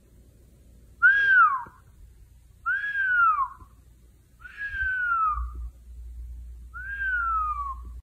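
Golden retriever puppy whining: four high whines about two seconds apart, each under a second long, rising briefly and then sliding down in pitch.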